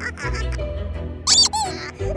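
A clown's squeaky prop gives one short, loud squeak about one and a half seconds in, over background music.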